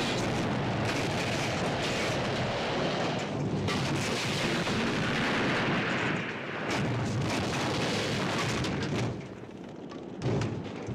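A vehicle fire with a continuous rush of flame and several blasts as the burning truck goes up. The sound drops off about nine seconds in.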